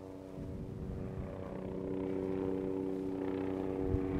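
A firefighting helicopter flying overhead: its rotor and engine make a steady hum of several pitches that grows louder as it approaches.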